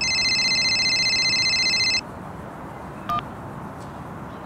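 Mobile phone ringing: a trilling electronic ringtone that lasts about two seconds and cuts off suddenly. About a second later comes a brief chirp.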